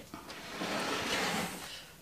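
A blade cutting through the thick, crispy crust of a freshly baked croissant-crust pizza: a continuous crunching scrape that starts about half a second in and fades just before the end.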